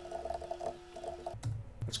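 Faint keystrokes on a computer keyboard as a line of code is typed, over a faint steady hum that stops about a second and a half in.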